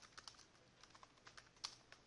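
Faint typing on a computer keyboard: about a dozen light, unevenly spaced key clicks as a short phrase is typed.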